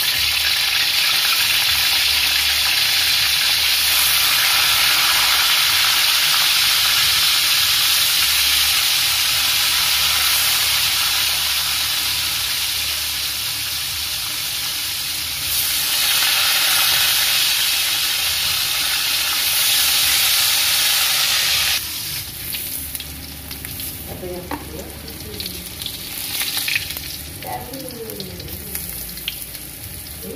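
Tofu frying in hot oil in a wok, a loud steady sizzle. About two-thirds of the way in it drops sharply to a quieter, more uneven sizzle, with a metal spatula turning the browned pieces near the end.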